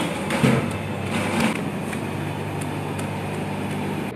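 Boiled potatoes and vegetables being mashed in a large aluminium vessel with steel pots pressed down as mashers, giving a couple of thuds about half a second and a second and a half in. A steady low mechanical hum runs under it.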